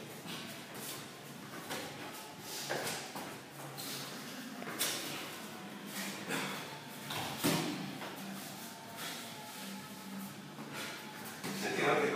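Irregular thuds of punches landing on boxing gloves held up as targets, spaced a second or more apart.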